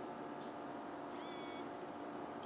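Quiet room tone with a steady low hum, and a faint brief high-pitched tone a little past the middle.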